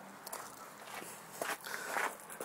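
Quiet footsteps on a dirt and gravel lot, a few irregular soft scuffs and crunches as someone walks.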